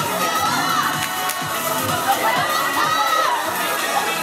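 A crowd of fans screaming and cheering, many high voices shouting over one another without a break.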